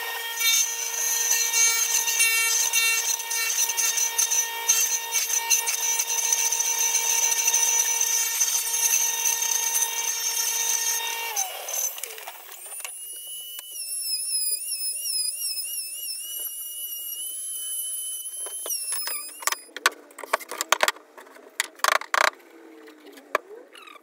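Table saw with a drill-driven turning rig running steadily while a square board is spun against the blade and cut round; the whine winds down about halfway through. Then a second power tool runs with a higher whine that wavers in pitch for several seconds, followed by a few sharp knocks near the end.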